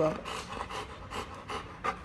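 A dog panting close by, quick short breaths several times a second.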